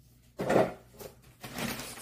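A short, sharp rustle and slap about half a second in as paper booklets and packaging are handled, followed by fainter handling noise.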